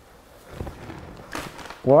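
Quiet room sound with soft thuds and rustles of a person moving and sitting down on a leather sofa. A man's voice says "What?" near the end.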